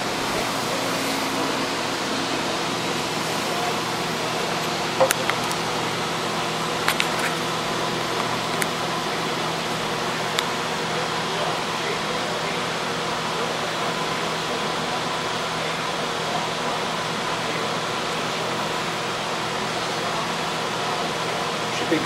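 Steady whir and hum of computer cooling fans from a benchmarking rig under full load, with a few faint clicks in the first half.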